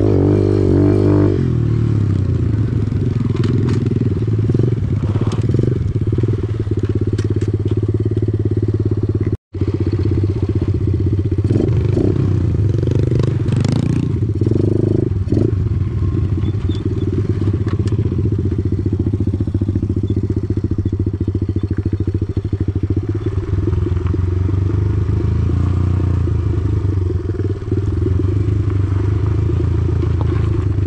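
A 110cc four-stroke single-cylinder pit bike engine running steadily under throttle on a dirt trail, heard close up from the bike itself, with loose rattles and gravel clatter. The sound drops out completely for an instant about nine seconds in.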